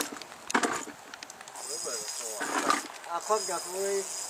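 A spinning reel's drag buzzing in bursts as a large grass carp pulls line against a hard-bent rod, with excited voices exclaiming.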